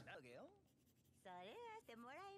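Faint character dialogue from an anime episode, two short spoken lines turned down very low; near silence otherwise.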